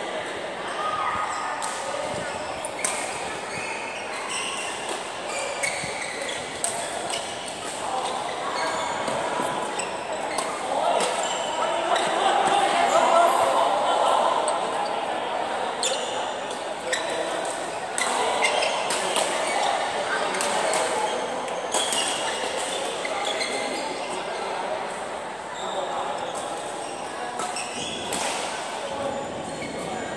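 Badminton play in a large echoing hall: sharp racket strikes on the shuttlecock at irregular intervals, over indistinct chatter of players and onlookers.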